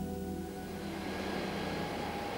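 Soft background music of held, bell-like synthesizer tones dying away, while a steady, even hiss of machinery or ventilation noise comes up beneath it from about half a second in.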